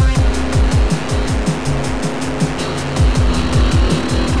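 Electronic noise music: repeated falling bass drops under fast, even hi-hat-like ticks, with a harsh, grinding noise layer over it that eases a little past halfway.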